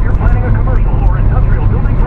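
Car cabin noise while driving at highway speed: a steady low rumble of road and engine.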